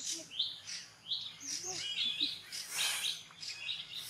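Birds chirping, short high chirps repeated every half second or so.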